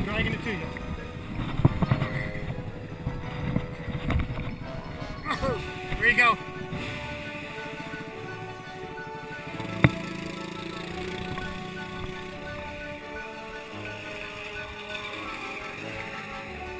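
Dirt bike engine revving unevenly as it is worked out of deep mud. About seven seconds in, steady background music takes over.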